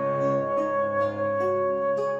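Early-music trio of transverse flute, lute and viola da gamba playing. The flute holds a long note over lower notes from the bowed viol and plucked lute, which move to a new note about a second and a half in.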